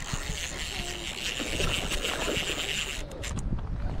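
Baitcasting reel's drag buzzing in a rapid, even ticking as line slips out under a big bass's pull, stopping about three seconds in; the drag is set too loose. Low wind rumble on the microphone underneath.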